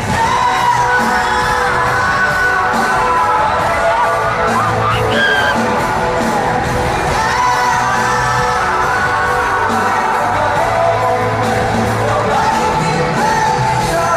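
Live pop band performance heard in an arena: a male lead vocal singing into the microphone over the band, with the audience cheering and screaming along.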